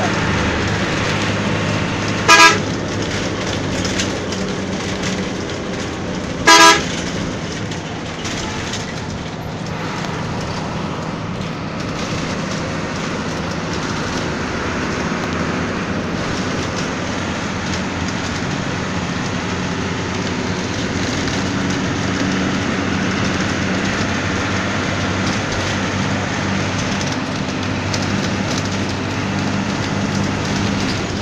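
A coach's engine and road noise run steadily, heard from inside the cabin. The horn sounds twice in short blasts, about two and a half seconds and six and a half seconds in.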